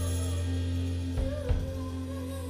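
Live band playing a quiet passage: a long held low bass note under a wavering melody line, with two drum strokes close together a little after halfway.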